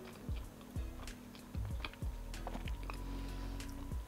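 Quiet background music with sustained low notes, under faint irregular clicks of someone chewing a soft baked bun.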